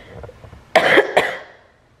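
A person coughing twice, a louder cough followed closely by a shorter one.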